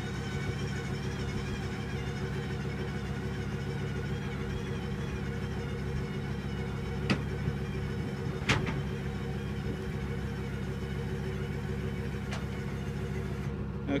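Electric Bed Locker tonneau cover's drive running with a steady hum as the cover slides closed over a pickup bed, with three sharp clicks along the way.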